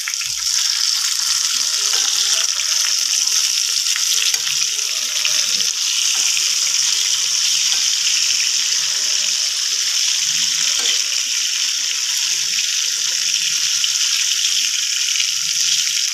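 Prawn masala fry sizzling steadily in a nonstick wok, with a steel ladle stirring through the sauce.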